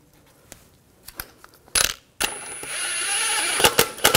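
Light metal clicks as a lug bolt is threaded in by hand and a brief clank, then about two seconds in a cordless impact wrench spins the lug bolt down with a steady high whine, with a few sharp knocks near the end.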